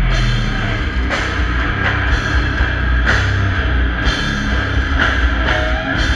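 Death metal band playing live at full volume: heavily distorted low guitars and bass under the drums, with a crash cymbal about once a second. Heard from among the audience.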